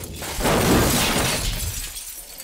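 A loud crash of glass shattering as a body lands on a car's roof, with shards raining down. It hits about half a second in and dies away over the next second.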